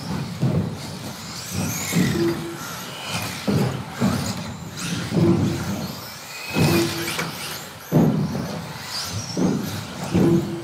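1/10-scale electric 2wd stock buggies racing: the high whine of their brushless motors rises and falls as they accelerate and brake. Thuds and clatter come from the cars landing off the jumps and hitting the track, about every second or two.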